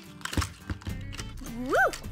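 A few light clicks and knocks of small plastic nail polish bottles and their packaging being handled, over steady background music, followed by a short rising-and-falling 'woo!' near the end.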